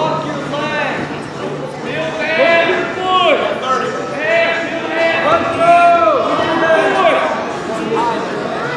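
Several people shouting at once from the sidelines, overlapping drawn-out calls that rise and fall in pitch, echoing in a large gym.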